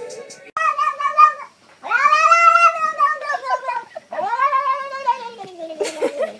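A cat yowling in three drawn-out calls. The middle call is the longest, rising and then falling in pitch, and the last one slides downward.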